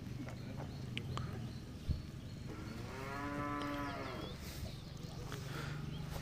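A cow mooing once: a single drawn-out call that rises and then falls in pitch, starting about two and a half seconds in and lasting nearly two seconds, over a steady low hum.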